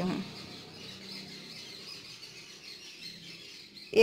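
Faint bird chirping in the background over quiet room tone.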